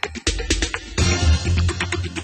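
Background music with a steady beat and a deep bass, with a short crash-like swish about a second in.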